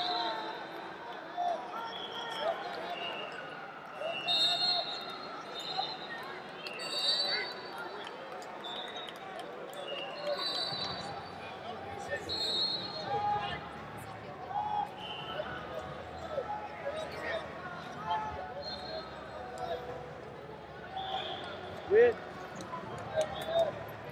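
Echoing ambience of a large arena during a wrestling tournament: a steady murmur of distant voices from coaches, officials and spectators, with short referee whistles from other mats sounding now and then. A single loud thud comes about two seconds before the end.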